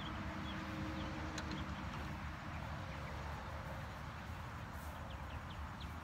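Outdoor ambience with a steady low rumble and a few faint, short bird chirps near the start.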